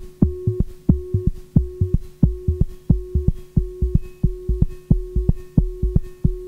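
Korg MS-20 analogue synthesizer playing a patched loop with no sequencer. It repeats a low pulse about three times a second, each pulse a click that drops quickly in pitch to a deep thump, over a steady held tone.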